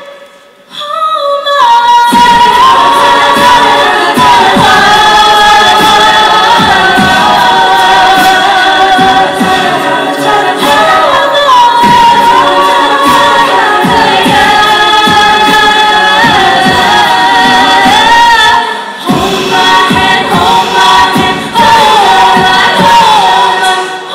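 A cappella group singing through microphones, a melody line over sustained backing harmonies. The voices drop away briefly at the start and come back about two seconds in, with another short break near the end.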